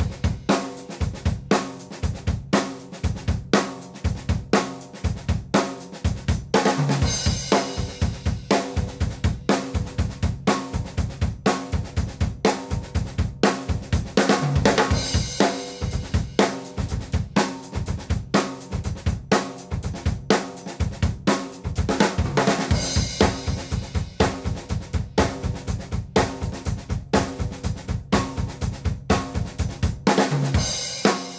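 Acoustic drum kit playing a steady groove: a repeating right-and-left-hand pattern with quiet ghost notes on the snare over a bass drum pattern that changes every four bars. A cymbal crash about every eight seconds marks each change.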